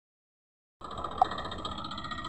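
Silence, then a Massey Ferguson tractor's diesel engine running steadily from just under a second in, with a short high-pitched chirp a moment later.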